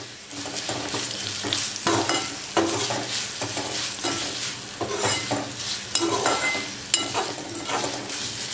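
A slotted metal spatula stirring and scraping a sizzling tempering of curry leaves, green chillies and whole spices in hot oil in a metal kadhai. The hiss of frying runs under repeated scraping strokes, with a few sharp clinks of metal on metal.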